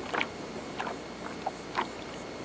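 A few short, faint clicks and taps of hands working a hook out of a small, just-caught speckled trout, over a low outdoor hiss.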